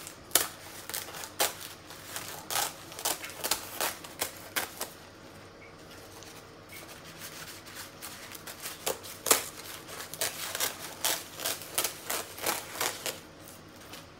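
Dried lotus leaves crackling and snapping as they are bent and pulled apart by hand, in irregular sharp crackles. The crackles come in two runs, with a quieter lull about five to eight seconds in.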